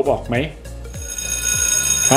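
Background electronic music with a steady low bass; about a second in, a sustained high bell-like ringing enters and holds.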